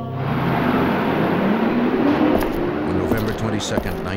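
City street ambience: traffic noise with people's voices talking in the background, starting suddenly as the music stops.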